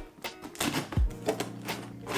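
A knife slitting the packing tape on a cardboard box and the box being worked open: a run of short scraping clicks and rustles, with a low thump about a second in, over soft background music.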